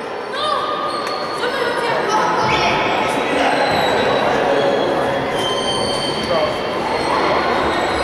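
Reverberant sports-hall din of a youth futsal game: children's voices calling out over the thud of the ball being kicked and bouncing on the court floor.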